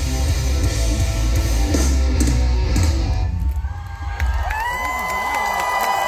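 Live rock band with electric guitars, bass and drums playing loud, stopping about three seconds in; then a single high guitar tone is held and rings on steadily as the crowd cheers.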